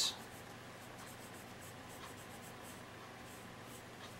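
A wooden pencil drawing a line on a template piece: a faint scratching of the lead on the surface.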